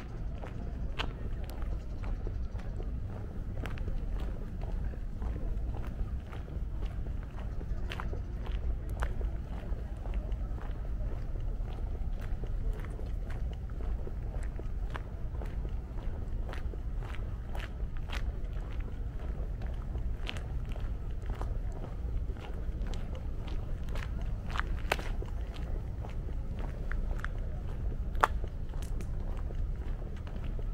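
Footsteps on a paved path, a string of short irregular clicks and scuffs over a steady low rumble, with faint voices of people in the distance.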